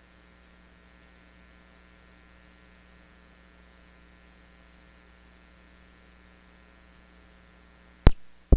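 Near silence apart from a faint, steady electrical mains hum: a low buzz with many evenly spaced overtones over light hiss, unchanging throughout.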